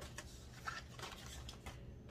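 Faint scattered clicks and light rustling of small items being handled, over a low steady hum.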